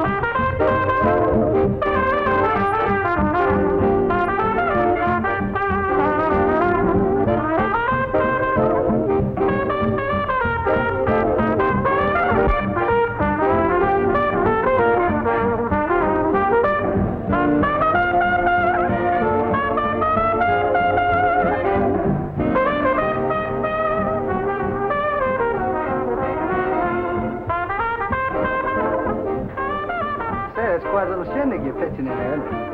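A swing dance band playing an up-tempo number, trumpets and trombones to the fore over saxophones, string bass and rhythm, with a lead trumpet carrying the melody.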